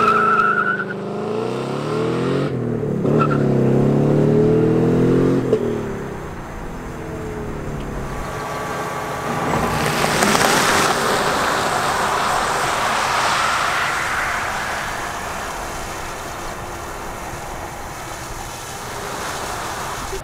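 A 2021 Ford Mustang GT's 5.0 Coyote V8 launches hard with a tyre squeal and revs up through the gears of its six-speed manual, its pitch dropping at shifts about 2.5 and 5.5 s in as it fades away. From about 8 s the all-electric Mustang Mach-E accelerates past with only a rush of tyre and road noise and a thin whine, and no engine sound.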